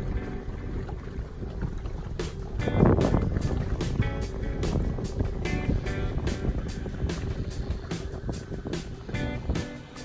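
Background music with a steady beat, laid over a low rumble from the boat moving across the water.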